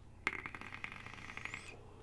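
Electronic cigarette firing during a draw: a sharp click, then the coil sizzling and crackling as it vaporises e-liquid for about a second and a half, cutting off abruptly.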